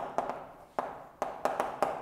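Chalk tapping and scraping on a chalkboard as a word is written by hand: a quick, uneven series of sharp taps, about seven in two seconds, each fading quickly.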